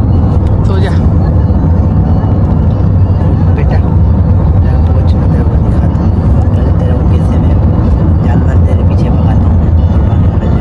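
Steady low rumble of a moving car's engine and road noise, heard from inside the cabin.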